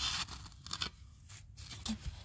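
Steel shovel blade scraping and cutting into sandy soil: one loud scrape at the start, then a few shorter scratches.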